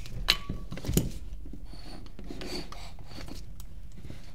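Upper and lower receivers of a T15 paintball marker being handled and fitted back together: two sharp clicks in the first second, then faint rubbing and sliding of the parts against each other.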